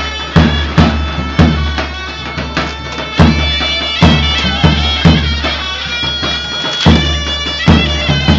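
Live Greek folk dance music: a reed wind instrument plays an ornamented melody over a steady low drone, with a large double-headed daouli drum beating a strong, uneven dance rhythm.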